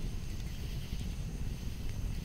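Campfire crackling: irregular small pops over a low, steady rumble of burning wood.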